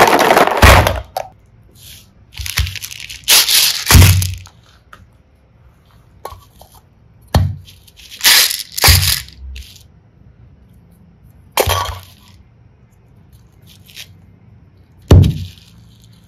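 Hard plastic slime cases being handled, knocked together and set down: a series of separate crackling plastic clacks and rattles, about six bursts with short quiet gaps between them.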